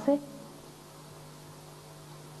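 A steady electrical hum with faint hiss on the soundtrack, holding one low pitch, after a woman's voice trails off at the very start.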